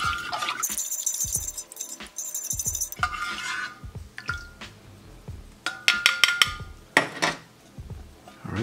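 A plastic spoon stirring liquid in a metal canteen cup: the liquid swishes, and the spoon clicks and scrapes against the metal. Some of the knocks set off short ringing tones from the cup, with a dense run of clicks about six seconds in.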